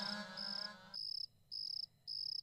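Cricket chirping, short even trills about two a second, the tail of background music fading out in the first second.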